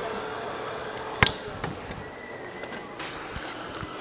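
Handling noise from a camera jostled along with a bag into a baggage scanner: one sharp knock about a second in, then a few softer bumps.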